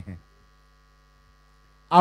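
A spoken word ending, then a faint steady electrical hum with a few thin high tones over it, until a voice resumes at the very end.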